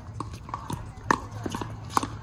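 Pickleball paddles striking a plastic pickleball in a rally at the net, a string of hollow pops, the loudest about a second in and another just before the end.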